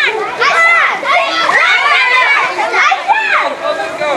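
A group of children shouting and calling out as they play, many high voices overlapping and rising and falling in pitch.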